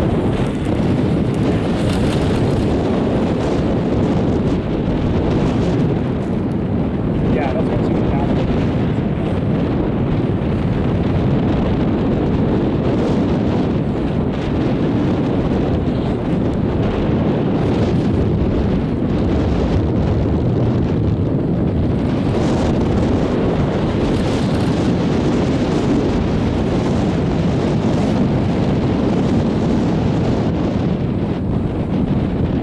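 Steady wind noise buffeting the camera microphone on a moving chairlift, a dull, even rush with no clear rhythm.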